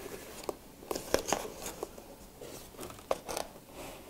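A small white cardboard box being opened by hand: soft rustling scrapes of card sliding and flaps folding back, with a scattering of small sharp ticks.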